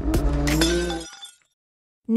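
Channel logo intro sound effect: a held tone with a few sharp hits over it, fading out and stopping about a second and a half in.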